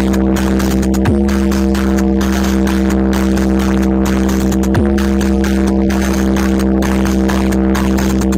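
Loud electronic sound-check track played through a stacked DJ speaker box system: a steady held tone over constant deep bass. Twice, about a second in and again near five seconds, the pitch drops in a quick downward sweep.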